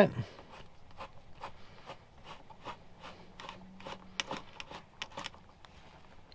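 Faint, irregular small clicks and scrapes of a self-tapping screw being tightened into a stripped hole in fiberglass, with a zip tie packed into the hole to give the threads something to bite on.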